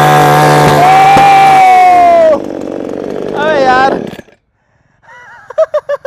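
Two-stroke petrol chainsaw running at full throttle for about two seconds, then the throttle is let off and the engine speed falls away. Voices follow, with a short silence before bursts of laughter near the end.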